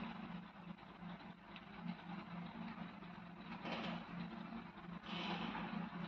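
Faint background noise: a steady low hum under a hiss, with a couple of brief soft rustles about four and five seconds in.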